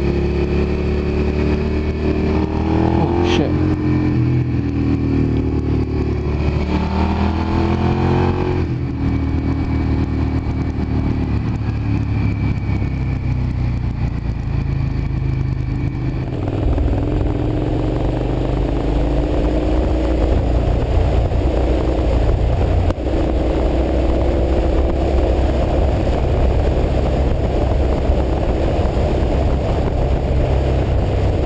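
Motorcycle engine heard from the rider's own bike while riding, its pitch rising and falling as it revs through the gears, under steady wind and road noise. The sound changes abruptly twice, about a third and about halfway through.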